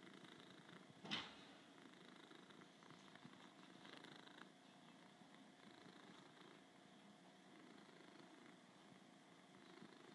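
A tabby cat purring faintly and steadily, close up, with one brief sharp rustle or knock about a second in.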